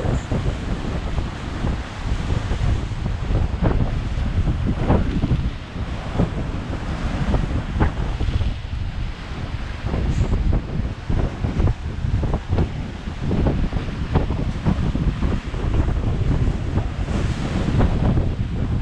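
Sea waves breaking and washing over rocks, with heavy wind buffeting the microphone.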